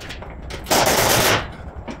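Pneumatic impact wrench hammering in one short burst of under a second, near the middle, loosening a fastener in the rear wheel well during a teardown.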